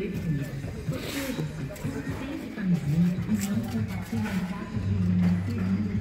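Indistinct voices of people talking in the background, with a steady low hum coming in near the end.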